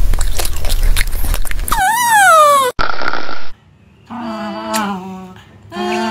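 A puppy lapping from a saucer: a quick run of wet clicks over a low rumble. After about two seconds a loud pitched cry falls in pitch, and it cuts off suddenly. Later, steady pitched voice-like tones come in and stop twice.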